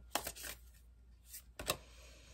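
A deck of tarot cards handled by hand as a card is drawn: a few short, quick card flicks and taps near the start and again about a second and a half in.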